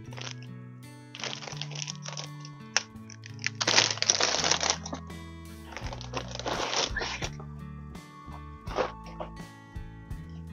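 Background music with steady held notes, over which a cardboard box and plastic-wrapped packs are handled and moved, making several bursts of handling noise; the loudest comes about four seconds in.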